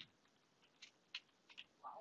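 Near silence, with a few faint, brief keyboard clicks as a search term is typed.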